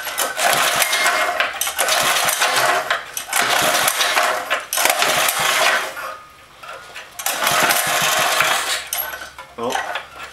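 A 4.5 hp Honda single-cylinder four-stroke being pull-started by its recoil starter: about five pulls, each a second or so of whirring and metallic rattle as the engine turns over, with a short pause after the fourth. The engine does not catch and run.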